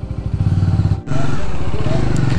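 Royal Enfield Himalayan motorcycle's single-cylinder engine idling with a steady low pulse, briefly dropping away about a second in.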